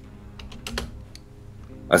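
A few light clicks and taps of a computer keyboard, spaced irregularly, with a faint steady hum underneath.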